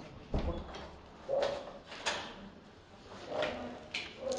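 A heavy wooden apartment door thuds against its frame once, about half a second in, followed by a few fainter short knocks and shuffles.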